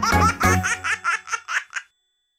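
A baby laughing in a quick run of giggles that fades out, over the last notes of a children's song.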